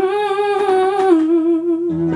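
A woman's voice humming a long held note with vibrato, unaccompanied, dipping slightly in pitch about a second in. Just before the end a low, steady instrumental chord comes in underneath.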